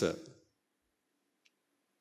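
The end of a man's spoken word fading out, then a pause of near silence with one faint click about a second and a half in.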